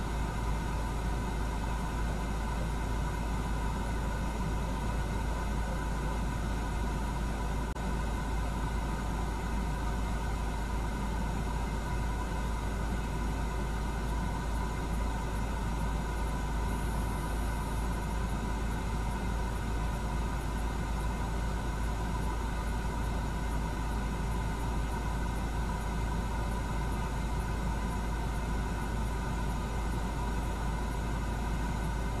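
Steady low rumble of an idling vehicle, heard from inside the stopped car, with no change throughout.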